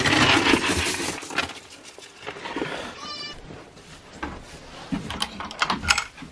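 Goats rustling in hay at a wooden feeder for the first couple of seconds. A short, high-pitched goat bleat about three seconds in. A few sharp knocks near the end.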